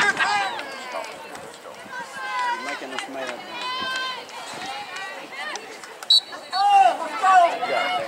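Spectators calling and talking around a lacrosse field. About six seconds in there is a short, sharp blast of a referee's whistle, starting the draw at centre, followed by louder shouting as play breaks.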